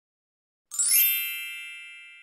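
A bright bell-like chime sound effect: a single ding of several high ringing tones starting about two-thirds of a second in and fading slowly.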